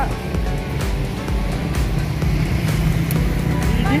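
Background music with a low, steady bass.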